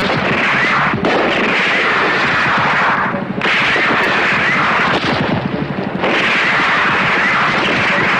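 Dense, continuous gunfire from a film soundtrack, many shots running together into one loud barrage. The mix changes abruptly several times, about one, three and a half, and five seconds in.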